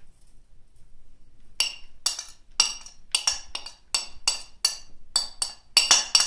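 A metal spoon tapping and scraping grated cheese off a glass plate, about fifteen sharp ringing clinks at roughly three a second, starting about a second and a half in.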